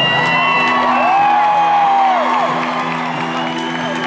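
Acoustic guitar playing on while audience members whoop and cheer, with one long whoop in the middle.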